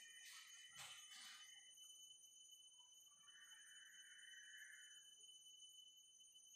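Near silence: room tone, with a few faint knocks early on and a faint two-second scratch of a marker writing on a whiteboard around the middle.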